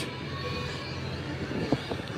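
Steady low outdoor background rumble, with one brief faint knock about three-quarters of the way through.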